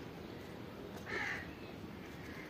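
A single short call, about half a second long, about a second in, over faint steady outdoor background noise.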